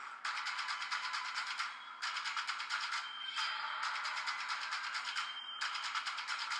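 Background music track with a fast, even beat.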